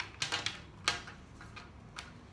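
Colored pencils clicking against each other and the tabletop as one is picked out of a loose pile. A quick cluster of light clicks comes first, then one sharper click just before a second in and a fainter one after.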